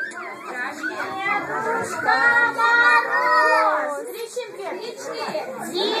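A group of young children talking and calling out over one another, their high voices overlapping, with a drawn-out call from about two to three and a half seconds in.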